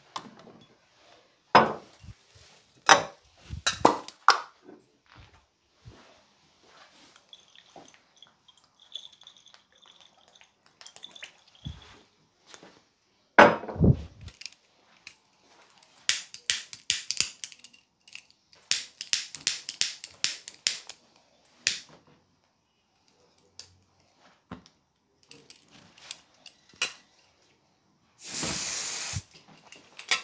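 Scattered knocks, clicks and taps of handling, with one heavy knock about halfway through and quick runs of clicks after it; near the end, one steady hiss of about a second from an aerosol spray can being sprayed.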